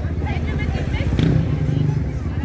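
A motor vehicle engine running close by, a steady low rumble, with faint voices from the street behind it.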